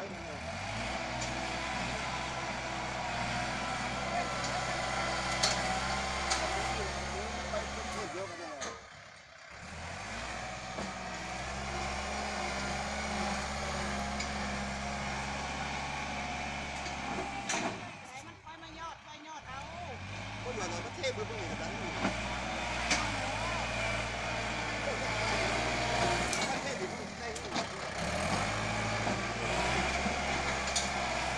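Kubota compact tractor's diesel engine running steadily under load as its front blade pushes and levels loose soil. The engine sound breaks off briefly twice, about nine and nineteen seconds in.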